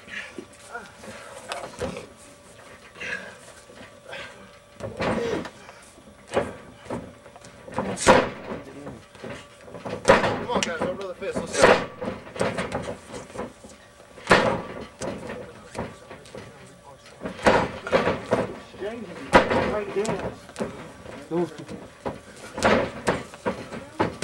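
Wrestling match in a ring: several sharp smacks and thuds from strikes and bodies landing, spaced a few seconds apart, with shouting voices between them.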